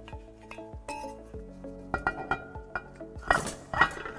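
Metal Ford 5R110W transmission pump parts clinking and knocking as they are handled and the pump is set down over its stator shaft: a handful of separate light strikes. Steady background music plays underneath.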